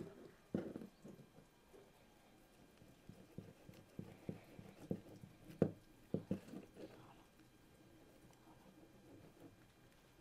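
Faint, irregular clicks and taps from handling a perforated plastic pipe and a fine mosquito net being fastened over its end. The taps come most often in the middle of the stretch.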